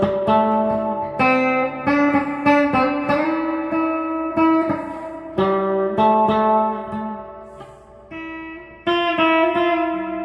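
Solo guitar playing: plucked notes and chords that ring out and fade, with a lull around eight seconds in, then a fresh chord about a second before the end.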